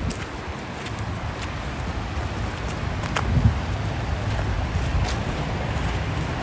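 Steady rush of the Yellowstone River flowing fast over a rocky bed, with wind buffeting the microphone.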